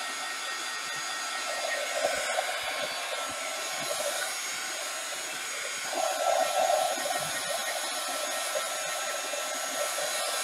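Handheld heat gun blowing steadily, drying wet acrylic paint on canvas. Its rush of air swells louder about two seconds in and again about six seconds in.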